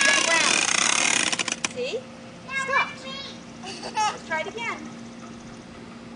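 Hard plastic wheels of a child's four-wheeled ride-on toy rumbling over asphalt, with voices over it. The rumble stops abruptly about a second and a half in, and short children's calls follow.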